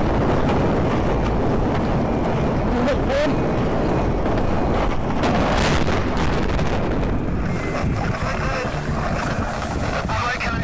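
Wind buffeting an onboard camera microphone and water rushing past the hull of the Vestas Sailrocket speed-sailing boat at high speed: a loud, steady rush.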